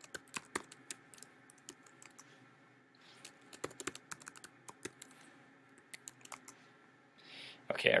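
Computer keyboard keystrokes as a password is typed: quick, uneven runs of clicks, thinning out after about six seconds. A voice starts up just before the end.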